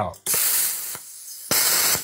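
Arccaptain CUT55 Pro plasma cutter torch firing its pilot arc in open air, without touching steel: a loud hiss of compressed air and arc starting about a quarter second in and easing to a softer hiss, then a second loud hiss about a second and a half in.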